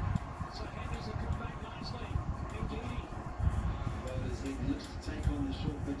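Cricket TV broadcast played through a flat-screen TV's speakers and picked up in the room: stadium crowd noise with music, and a commentator's voice coming in near the end.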